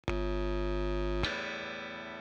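Opening of a rock song: a held, distorted guitar chord, then a second chord struck just after a second in that slowly fades.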